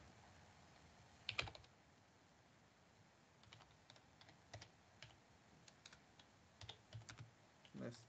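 Faint computer keyboard typing: scattered soft key clicks, one slightly louder about a second and a half in, and a quick run of keystrokes near the end.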